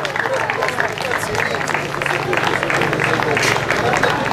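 A small crowd applauding, a dense patter of clapping with some voices mixed in and a steady low hum underneath.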